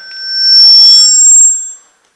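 Public-address microphone feedback: a loud, high-pitched squeal of several steady tones that swells up over about half a second, holds for about a second and dies away shortly before the end.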